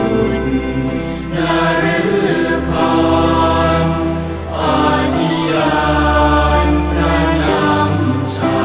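A Thai Buddhist devotional chant sung to musical accompaniment: sung phrases with held notes over sustained bass tones.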